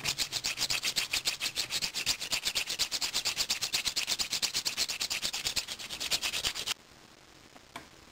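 A flat sanding stick rubbed rapidly back and forth across a resin figure part, smoothing the spot where it was just cut. It makes an even train of quick scraping strokes, several a second, that stops sharply about a second before the end.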